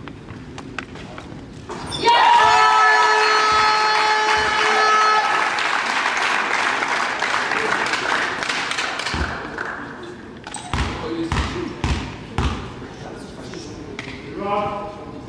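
A horn sounds for about three and a half seconds starting about two seconds in, over loud shouting and cheering that fade over the following few seconds in a large, echoing sports hall. Then a basketball bounces on the hall floor several times.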